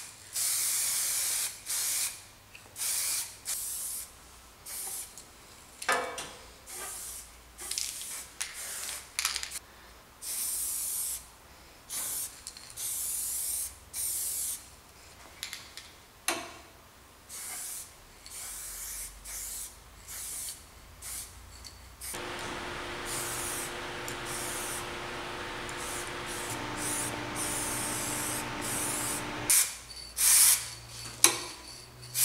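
Aerosol spray paint can spraying in repeated bursts of hiss, some brief and some lasting a second or more. About two-thirds of the way through, a steady hum with several held tones comes in under the spraying.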